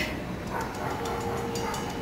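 Low, steady background noise of a theatre hall during a silent pause. About halfway through, a faint steady held tone comes in and keeps going.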